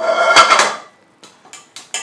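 A stainless steel pot struck and scraped with a utensil: a loud clang that rings for about half a second, then a few lighter taps.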